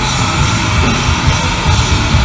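Heavy metal band playing live at full volume: distorted electric guitars over a pounding drum kit, recorded on a phone from the audience.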